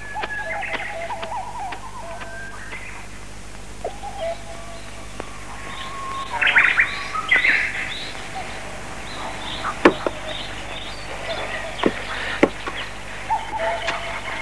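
Birds chirping and calling: a mix of short chirps and held whistled notes, with a few sharp clicks in the second half.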